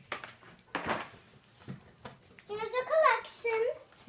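Clear plastic toy packaging crinkling briefly about a second in, followed by a girl's voice speaking.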